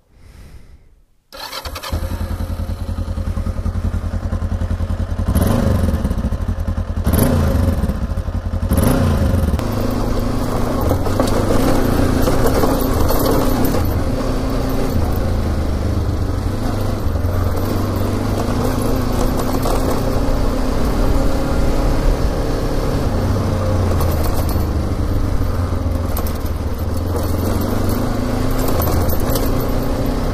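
Kawasaki KLE 500 motorcycle's parallel-twin engine running under way on a dirt track, starting up loud after a near-quiet first second or so, with a few surges in revs in the first ten seconds and then running steadily.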